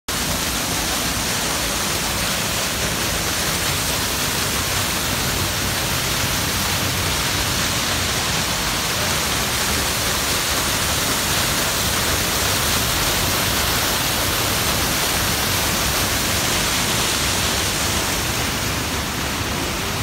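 Tall waterfall plunging over a rock cliff into a pool close by: a steady, loud rush of falling water.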